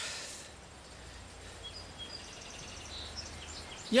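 Outdoor field ambience: a steady low hum with a few faint, short high chirps in the middle.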